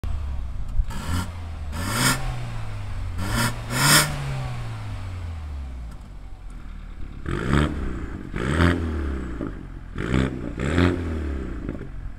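BMW 320 exhaust with the centre silencer deleted and a cutout valve fitted, revved from idle in short throttle blips. About four blips in the first few seconds, a short stretch of idle, then four more quick blips, each falling back to idle.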